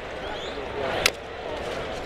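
A wooden baseball bat hitting the ball once, a single short sharp knock about a second in, for a weak tapper; steady ballpark crowd murmur around it.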